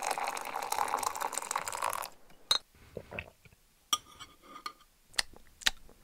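Tea being poured, a steady pour for about two seconds, followed by a few light, separate clinks.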